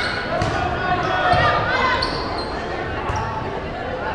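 Shouting voices of volleyball players and spectators echoing in a large gym, with a couple of sharp smacks of the ball being played, one near the start and one about three seconds in.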